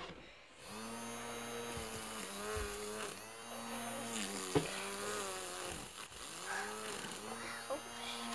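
Small electric motor of a handheld toy bubble fan buzzing as its plastic blades spin. It starts up about a second in and sags briefly in pitch several times.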